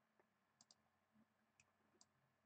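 Near silence with a few faint computer-mouse clicks, two of them close together a little after half a second in, as a trend line is dragged out on a charting program.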